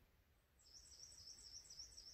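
A songbird singing faintly: a run of high, evenly repeated notes, about five a second, starting about half a second in.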